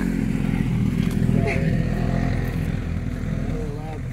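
A loud motor vehicle passing with a rough-running engine and exhaust, louder early on around the first second and a half, then easing off. It doesn't sound very good, in the speaker's view not long for this world.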